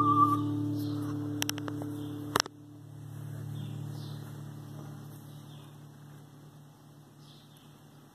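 The final acoustic guitar chord ringing and slowly dying away, with the end of a held whistled note with vibrato in the first half second. A few light clicks, then a sharp click about two and a half seconds in, after which the chord fades faintly.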